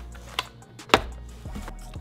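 Two sharp knocks about half a second apart, the second louder, as small cardboard boxes of scooter wheels are set down onto a stack, over faint background music.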